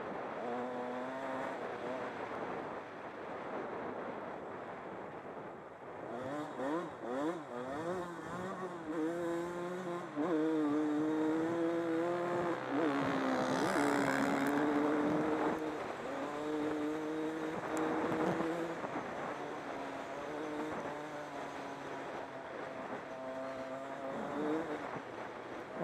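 Two-stroke Honda CR125 dirt bike engine, heard from the rider's helmet camera, revving up and down as it runs through the gears, with several quick climbs in pitch a quarter of the way in and the loudest, steadiest run from about ten to fifteen seconds. Wind rushes over the microphone.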